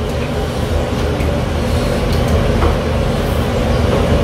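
Steady low rumble with a faint constant hum running under everything, with a few faint clicks and slurps as a bowl of noodles is eaten with chopsticks.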